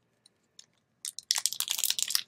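A foil Pokémon booster pack wrapper crinkling and tearing as it is opened by hand. It starts about a second in as a quick run of sharp crackles.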